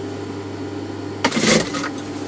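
Steady low hum of an industrial sewing machine's motor running without stitching. About a second and a half in there is a brief rustle as the cotton fabric is handled.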